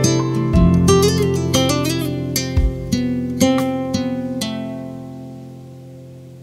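Background music: a solo acoustic guitar plucking notes and chords that ring out. It fades down over the last couple of seconds.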